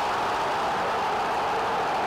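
Large stadium crowd cheering steadily after a goal.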